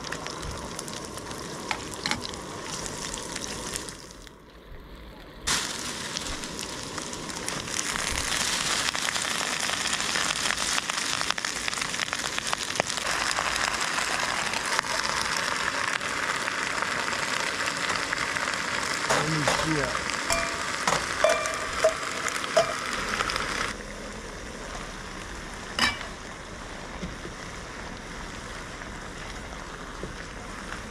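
Food sizzling in a hot wok on a camp stove as sausage, garlic and cabbage are stir-fried. The sizzle jumps sharply louder about five seconds in and drops back near the end, with a few metal clinks of the utensils against the pan along the way.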